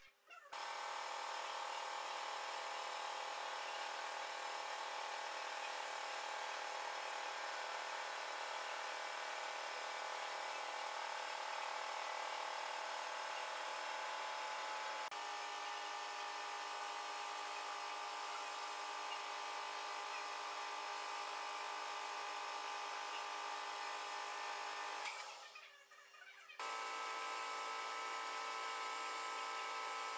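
Schaublin lathe running steadily while turning a small brass nut held in a collet, a motor whine made of several steady tones. The tone shifts about halfway through. Near the end the sound drops out for about a second and comes back with a different set of tones.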